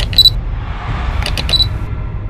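Camera shutter clicks used as a logo sound effect: one crisp click just after the start and a quick run of clicks about a second and a half in, over a steady deep rumble.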